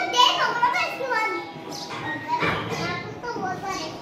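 Young children's voices, chattering and calling out as they play.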